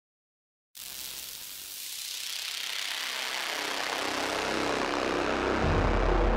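Opening of a dark cinematic soundtrack: after a moment of silence, a hiss-like swell of noise fades in and grows steadily louder and deeper, and a deep bass drone joins near the end.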